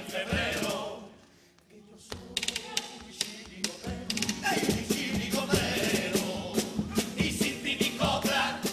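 Carnival chirigota group singing together in chorus to drum accompaniment; the singing dies away about a second in, leaving a short near-silent pause, then sharp drum strikes start up and the voices come back in.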